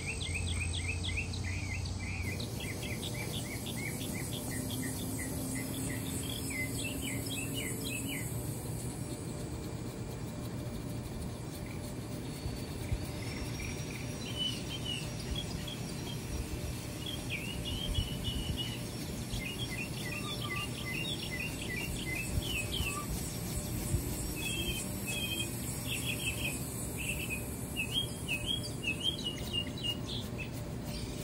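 Small birds chirping over a steady high insect buzz, with a few sharp knocks of an axe biting into the tree trunk, coming more often near the end.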